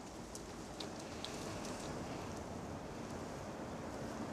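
Faint, steady outdoor background noise, an even hiss with a few soft ticks.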